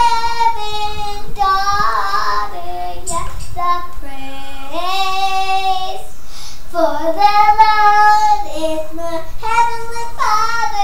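A young girl singing a praise song to herself, in several long phrases of held, sliding notes with short breaks between them.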